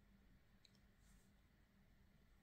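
Near silence: room tone with two faint short clicks.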